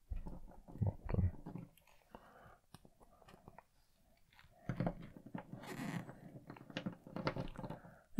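Faint handling noise of a plastic action figure and its accessory: scattered small clicks, rubs and taps as the accessory is fitted into the figure's hand and the figure is stood back on the wooden table.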